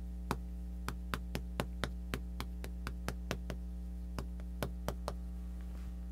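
Chalk clicking and tapping against a blackboard as characters are written: a quick, irregular run of sharp taps with a short pause in the middle, over a steady low hum.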